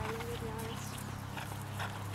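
Horse cantering on grass, its hoofbeats faint over a steady low hum.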